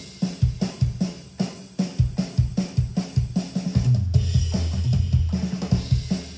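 Programmed drum kit from Logic Pro X's virtual drummer playing a busy drum lick: kick, snare, hi-hat and cymbal hits with toms, in a steady rhythm. A held low note sounds under the drums for about a second just past the middle.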